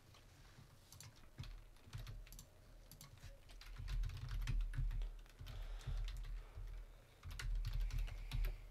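Typing on a computer keyboard: an irregular run of key clicks with dull low thuds under them, busiest in the second half.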